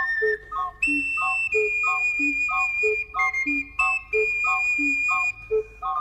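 Instrumental music: an ocarina plays a melody of long, high held notes over a steady two-beat accompaniment of alternating low bass notes and offbeat chords.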